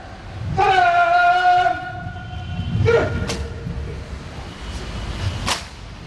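Honour guard drill: a long drawn-out shouted word of command, a second shorter one, then two sharp cracks about two seconds apart as the guard's rifles are handled in unison to present arms.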